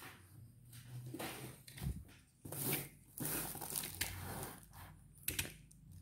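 A plastic courier mailer wrapped around a parcel crinkling and rustling as it is handled and turned over, with a few sharp knocks and clicks in between.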